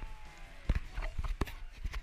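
Several sharp knocks and thumps, the two loudest a little under a second apart near the middle, over faint background music.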